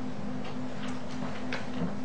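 Room tone in a lecture room during a pause in speech: a steady low electrical hum and background hiss, with a few faint ticks.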